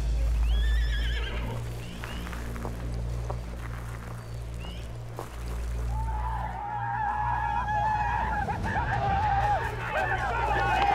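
A horse whinnying near the start over a film score with a heavy, steady low drone. From about six seconds in, a sustained, wavering high-pitched line joins and keeps going.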